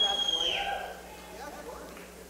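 A single loud whistle from the audience, one high note held and then sliding down to stop about half a second in, over faint crowd murmur.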